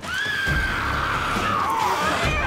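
A young woman's long, high, wavering shriek, dipping down in pitch near the end, over a low rumble.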